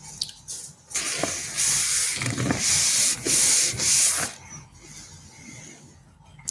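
Rustling, rubbing noise picked up close by a video-call microphone, in several loud swells over a few seconds, then stopping.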